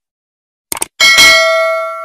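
Sound effect for a subscribe-button animation: two quick mouse clicks, then a bright notification-bell chime about a second in that rings on and slowly fades.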